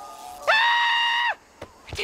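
A man's high-pitched cry of dismay, under a second long: it slides up, holds one high pitch, then drops away. Shortly before the end comes a short low thump.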